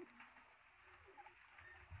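Faint bird calls over near silence: a short falling call right at the start, then a couple of brief, soft chirps in the second half.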